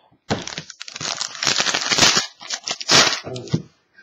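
A foil trading-card pack wrapper being torn open and crinkled by hand: a run of dense, irregular crackles lasting about three seconds.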